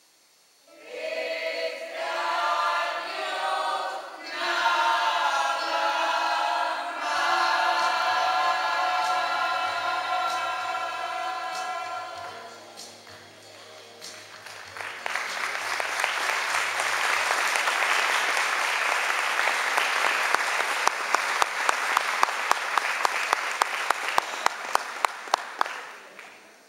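A choir singing in harmony, holding its last phrases until about halfway through. After a short lull, an audience applauds steadily, with sharp single claps standing out near the end.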